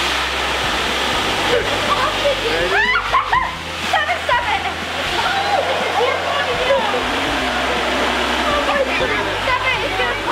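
Small electric balloon-inflator blower running steadily, pushing air through a hose into a giant latex balloon as it fills up, with a low motor hum under the rushing air.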